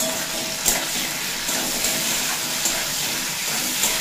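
Okra pieces frying in hot mustard oil in a steel kadai, a steady sizzle.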